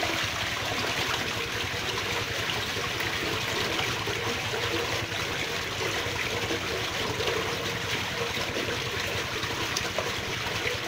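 Water flowing in a stream: a steady, continuous trickling and babbling over stones.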